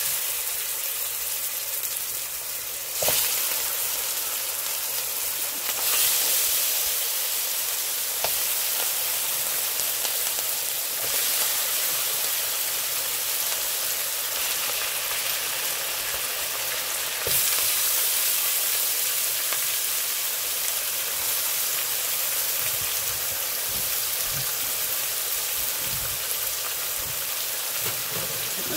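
Seasoned chicken pieces sizzling as they go into oil and brown sugar caramelized dark in a hot pot: the browning step of a pelau. The steady sizzle swells a few seconds in, again a little later, and once more past halfway as more chicken goes in.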